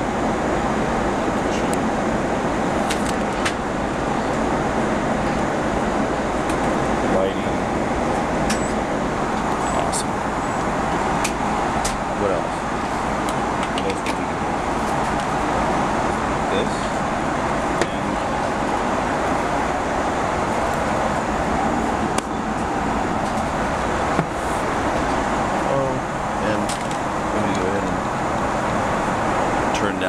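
Steady airliner cabin noise inside an Airbus A330-300: a constant hiss and rumble with a few faint clicks scattered through.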